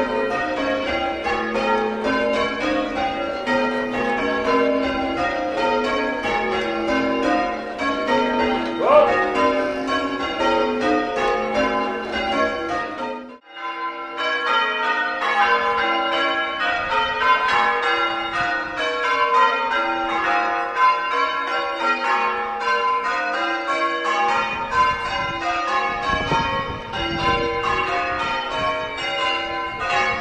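Church bells rung full circle in changes: a continuous, even stream of strikes stepping through the bells' notes. The ringing is first heard inside the ringing chamber, where the ropes are being pulled. It breaks off briefly about thirteen seconds in, then goes on heard from outside the tower.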